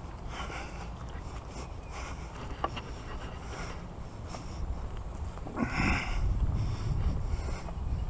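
Wind rumbling on the microphone while walking outdoors, with a louder brief rushing burst just before six seconds in.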